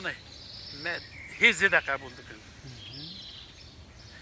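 A man speaking in a few short phrases, loudest about one and a half seconds in, with pauses between them. A faint, high chirring comes and goes in the background.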